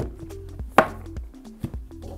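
Background music with a steady bass line, and one sharp knock a little under a second in from a cardboard headphone box being handled on a table, with smaller taps around it.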